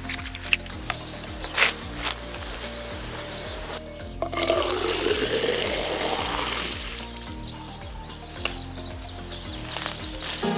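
Water running from an outdoor garden tap into a plastic water bottle for about three seconds midway through, its pitch rising as the bottle fills. Background music with a steady beat plays throughout.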